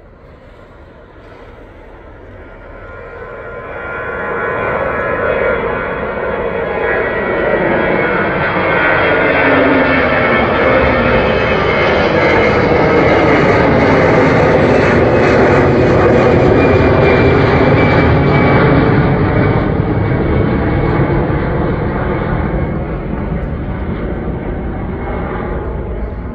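Airbus A320's CFM56-5B turbofan engines climbing out after takeoff and passing overhead. The jet noise builds over the first several seconds, is loudest mid-way and fades toward the end, with tones gliding downward as it goes by.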